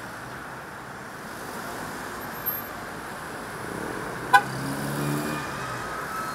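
City street traffic: a steady hum of cars driving past, with one short car horn beep about four seconds in.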